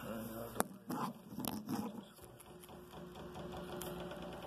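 Handling noise as the phone is moved and covered: rustling with two sharp knocks about half a second and a second and a half in, then a quieter stretch.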